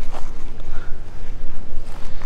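Low, steady rumble of wind on the microphone.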